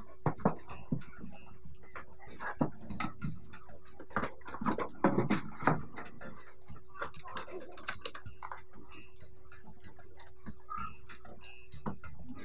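Irregular clicks and knocks of small items being handled and set down on a shop counter, over a faint steady hum.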